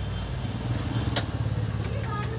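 Low, steady rumble of a motor vehicle engine running, with one sharp click just over a second in.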